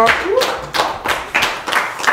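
People clapping hands: a round of applause.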